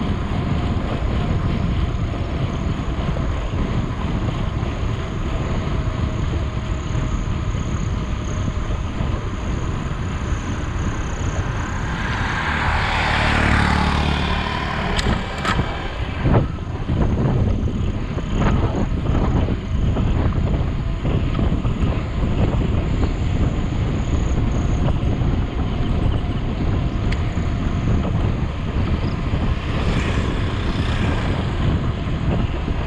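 Wind rushing over the microphone of a moving rider's camera, with steady low road rumble. A vehicle passes in a swell of noise about twelve seconds in, followed by a few sharp knocks.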